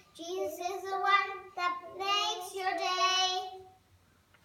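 Young girls singing unaccompanied. The song closes on a long held note that stops shortly before the end.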